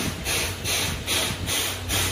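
Rhythmic hissing puffs, about three a second, over a steady low rumble: the steam-driven air pump of the standing C11 steam locomotive, working to charge the train's brake air.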